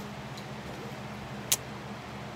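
A fabric backpack being rummaged through, with one sharp click about one and a half seconds in, over a steady low background hum.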